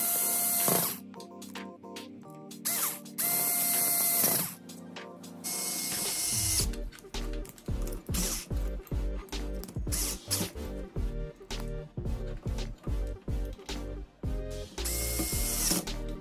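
Small electric screwdriver driving screws into a laser engraver's metal frame, its motor whining at a steady pitch in about five short bursts of a second or less.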